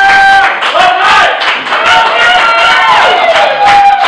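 Several voices whooping and cheering loudly, with held, gliding high calls and some music underneath.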